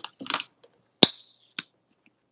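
Plastic acrylic paint tube being handled: a soft rustle, then a sharp click with a short ring about a second in, and a second, quieter click just after.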